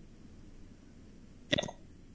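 A pause in a video-call conversation with faint line hiss, then one short vocal sound from a man near the end.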